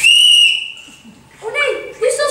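A whistle blown in one sharp, steady blast of about half a second. Its pitch dips slightly as it fades out, and a voice starts speaking near the end.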